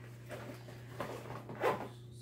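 Faint handling of a nylon hunting bag's side pocket: short spells of fabric rustling and zipping, about a second in and again shortly before the end, over a steady low room hum.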